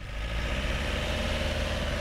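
Cartoon engine sound effect for a group of buses driving in: a steady low rumble that fades in from silence and then holds level.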